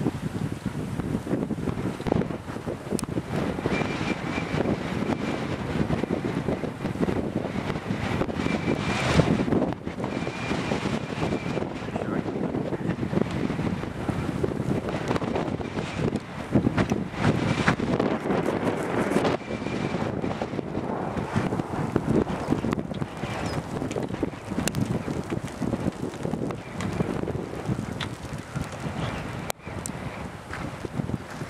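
Gusty wind buffeting the microphone in an uneven rush that swells and eases.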